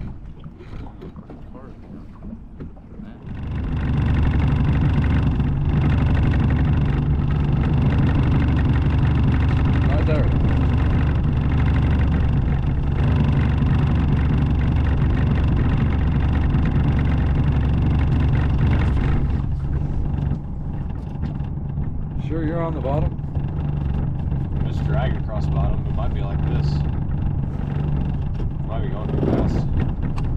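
A small boat's motor running steadily with the boat underway. It comes in about three and a half seconds in and drops back a little about two-thirds of the way through.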